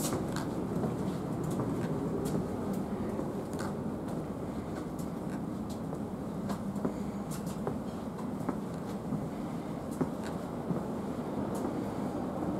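Interior running noise of a Thameslink Class 700 electric multiple unit: a steady low rumble with a few light clicks scattered through it.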